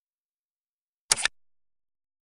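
A short, sharp double-click sound effect about a second in, like a camera shutter, the button-tap click of a like-and-subscribe animation.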